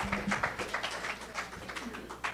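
Audience applauding with scattered hand claps, thinning out and getting quieter toward the end.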